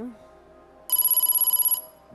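Game-show letter-reveal sound effect: a loud electronic trill, pulsing rapidly for about a second, starting about a second in. It signals that a requested letter is being shown on the board.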